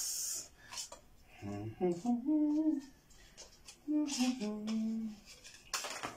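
A man humming or singing a tune under his breath in two short phrases of held notes, with a brief rustle at the start and a few light clicks from handling parts.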